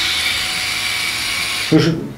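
Parkside PSF 4.6 A1 cordless screwdriver's small motor running free with the trigger held, a steady whir that stops near the end. The battery is almost flat and is being run down to empty: the tool is practically dying and barely turns.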